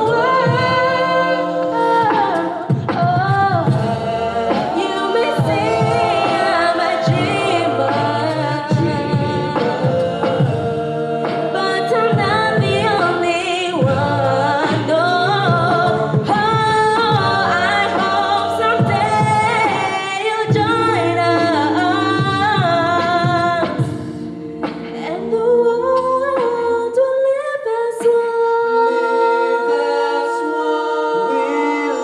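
A cappella vocal group of mixed voices singing in close harmony, with a sung bass line pulsing under the melody. Near the end the bass part stops and the voices hold long chords.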